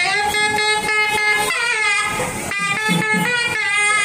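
A nadaswaram, the South Indian double-reed temple wind instrument, playing a melody of held notes with short pitch bends between them.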